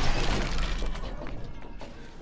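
Tail of a glass-shattering crash as a sledgehammer smashes a television screen: breaking glass and falling shards trail off, fading out under intro music.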